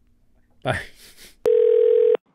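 A single loud, steady electronic telephone-style beep starts abruptly about a second and a half in and holds at one pitch for well over half a second. It is the kind of tone that opens an answering-machine recording.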